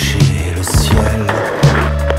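Skateboard wheels rolling over the slabs of a bank sculpture, the rolling noise building from about half a second in and fading near the end. Loud background music with a steady bass runs under it.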